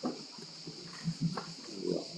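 A pause in a speech: a few soft breaths and handling noises close to a handheld microphone, over a steady hiss from the sound system.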